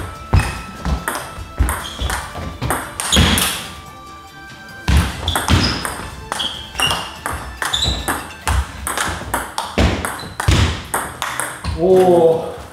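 Table tennis rally: quick clicks of the ball off paddles and the table, a few each second, with a short lull about four seconds in, over background music.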